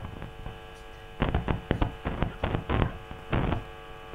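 Steady electrical mains hum, with a run of irregular clicks and crackles from about a second in until shortly before the end.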